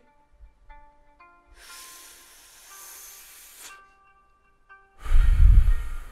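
A soft, drawn-out hiss of someone taking a long drag, then near the end a loud, breathy blow as the smoke is exhaled, rumbling on the microphone. Quiet background music runs underneath.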